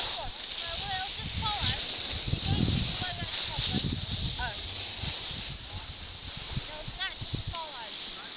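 Skis sliding over packed snow with a steady hiss, while wind buffets the microphone in uneven low rumbles.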